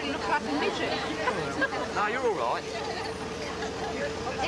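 Overlapping chatter of several people talking at once, with no single clear voice, over a steady faint hum.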